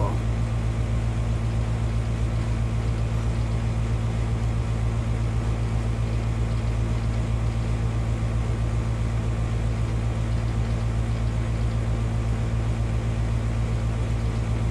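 Steady low hum with an even hiss over it, unchanging in level or pitch.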